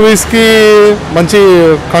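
A man speaking Telugu close to the microphone, in two short phrases with a brief pause between.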